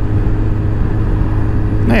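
Kawasaki ZZR600 inline-four engine running steadily at an even cruise, with wind and road noise over the microphone.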